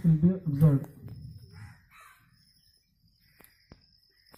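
A voice speaking, cut off about a second in; after that, birds calling faintly in the open air, with a few small clicks.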